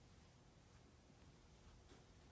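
Near silence: faint room tone, with one faint tick near the end.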